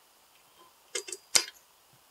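Two light metallic clinks about a second in, then a sharper click: a Suzuki DRZ400's aluminium crankcase half touching the transmission shafts and gears as it is lowered over them.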